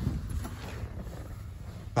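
Faint rustling and low rumble of a person climbing into a car's driver seat.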